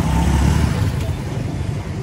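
A boda boda motorcycle taxi's engine passing close by, its rumble loudest in the first second and then easing off into the street's traffic noise.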